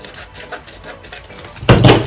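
Scissors cutting through a plastic sticker package: a run of small snips and crinkly clicks, then one louder knock near the end.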